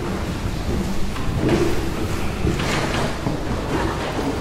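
Solo double bass and chamber orchestra playing a concerto, the low bowed bass notes heavy and rumbling in the recording.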